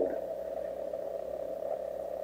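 Steady hum and hiss of an old cassette-tape voice recording, with a low steady tone underneath and no voice on it.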